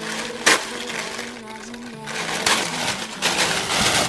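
Tissue paper rustling and crinkling as it is pulled open, with a sharp crackle about half a second in and a longer stretch of crinkling near the end. Soft background music with steady held notes runs underneath.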